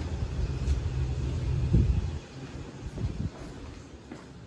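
Low rumble of traffic on a nearby main highway. It drops away suddenly about halfway through, and a few faint knocks follow.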